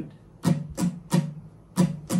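Acoustic guitar strummed in a steady rhythm: crisp strums about a third of a second apart, falling in groups of three with a short gap between groups, each ringing on briefly.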